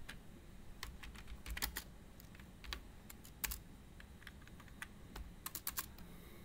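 Typing on a computer keyboard: faint, irregular key clicks, with a quick run of several keystrokes near the end.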